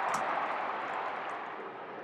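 Football stadium crowd noise after a mark: a broad crowd roar that slowly dies away.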